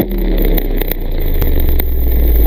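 Cinematic logo-intro sound effect: a loud, deep rumble with hiss that starts suddenly, with a handful of sharp crackles over it.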